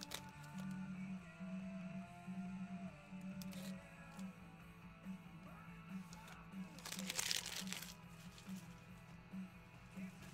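Quiet background music with a steady bass pulse, and about seven seconds in a short crinkle of clear plastic wrapping handled around a trading card.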